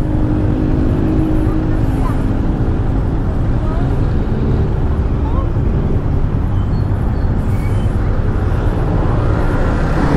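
Motor scooter engine running while riding, under heavy wind rumble on the helmet-camera microphone: a steady, unbroken low noise.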